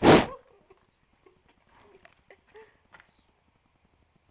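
A horse blowing one short, loud snort right at the microphone, followed by a few faint soft sounds.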